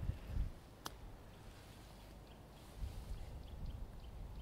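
A golf club striking the ball on a short chip shot: a single sharp click about a second in.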